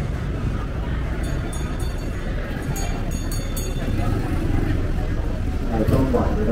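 City street ambience: a steady low rumble of road traffic and motorbikes, with footsteps on the pavement.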